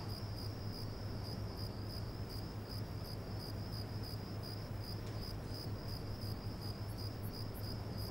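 Crickets chirping in a steady, pulsing high trill, over a low steady hum.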